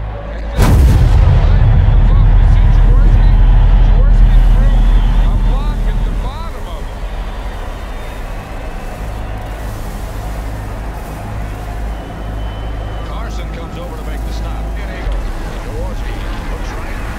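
A loud, deep boom about half a second in, a montage impact effect. Its heavy rumble holds for about five seconds, then drops off to a lower steady background.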